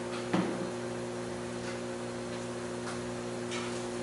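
Steady electrical hum made of several low steady tones, with one short knock about a third of a second in.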